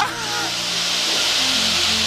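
Cockpit noise of a light aerobatic aircraft in a loop: the piston engine's steady drone under a constant rush of air hiss, the low engine note growing stronger about one and a half seconds in. A brief exclamation trails off at the very start.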